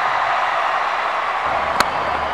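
Steady hiss of open-air field noise, cut near the end by one sharp crack of a cricket bat striking the ball.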